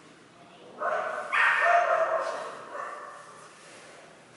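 A dog barking in a few drawn-out, high barks, the loudest about a second and a half in.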